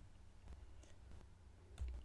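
A few faint computer mouse clicks over a low steady hum, as the on-screen document is scrolled.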